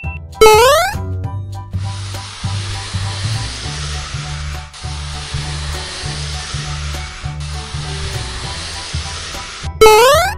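Cartoon soundtrack: background music with a steady bass line, a loud, quick rising whistle about half a second in and again at the very end. Between them comes a long steady hiss, broken twice, the sound effect of sliding down a stair handrail.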